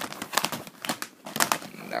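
Irregular crinkling rustles and sharp clicks of close handling right at the microphone, with a short lull just past the middle.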